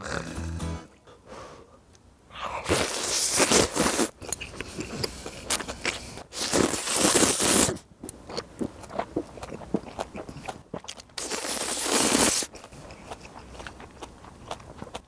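A man slurping hot kalguksu noodles: three long, loud slurps a few seconds apart, with chewing in between.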